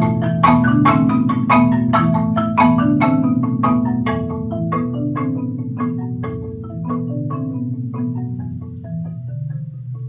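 Two concert marimbas playing a duet with mallets: a sustained rolled bass layer under struck melody notes. The playing gradually softens, and the struck notes grow sparser toward the end.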